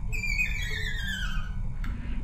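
Violin bowed in its highest register: one very high note that slides steadily down about an octave in pitch.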